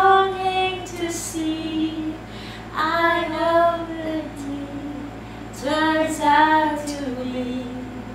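A woman singing a slow song unaccompanied, in three phrases of long held notes with short breaths between them.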